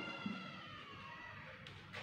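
Marker pen writing on a whiteboard, quiet, with one short sharper stroke near the end.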